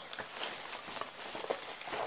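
Light rustling and a few faint soft taps from small items being handled.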